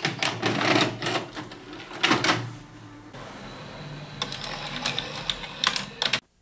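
VHS cassette pushed into a front-loading VCR, then the tape-loading mechanism working: a clatter of clicks, a motor whirring as the tape is drawn in and threaded, and more sharp clicks toward the end before the sound cuts off suddenly.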